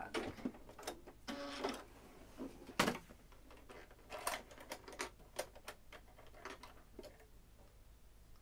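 Irregular small clicks and taps of hands working at a home sewing machine's needle plate and opening its drop-in bobbin cover, with one sharper click near the three-second mark.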